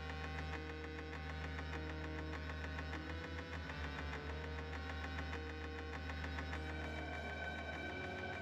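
Live electronic synthesizer music: a deep steady bass drone under sustained synth tones, with a slow two-note figure repeating in the middle register. Near the end the upper tones brighten.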